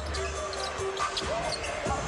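Basketball game sound from the arena floor: a basketball bouncing on a hardwood court, with a couple of sharp knocks over general arena noise.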